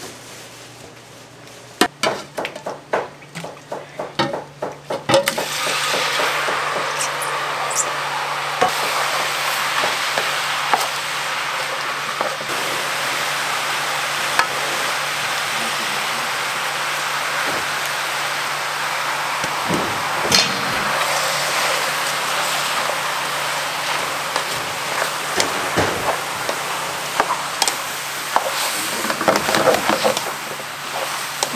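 Sliced mushrooms and vegetables sizzling steadily in an oiled frying pan over a gas flame. A spatula knocks against the pan several times in the first few seconds, before the sizzle sets in, and scrapes and knocks against it again near the end.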